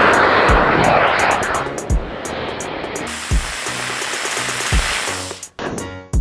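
A small rocket motor strapped to a toy car burning with a loud hissing rush, strongest in the first second and a half and then weaker, cut off suddenly near the end. Background music with a slow, steady beat runs underneath.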